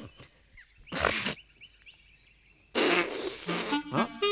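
A crying woman blowing her nose into a handkerchief: a short blow about a second in and a longer, louder one near the end.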